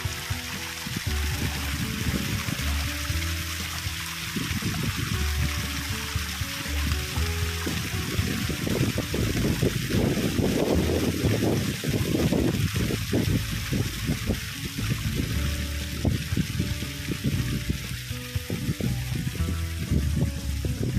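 Background music laid over the steady rush of a small stream spilling over rocks.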